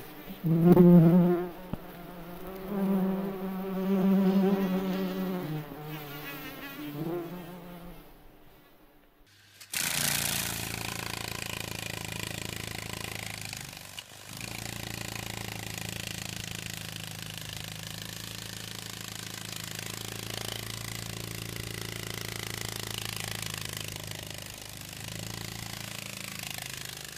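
May bug (cockchafer) wings buzzing. A low hum swells and fades with wavering pitch for about eight seconds and dies away. About ten seconds in, a steadier, rougher buzz starts abruptly and continues, dipping briefly a few seconds later.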